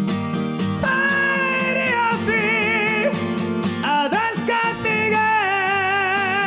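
A man sings long held notes with a wavering vibrato over a strummed acoustic guitar, the voice swooping in pitch about four seconds in.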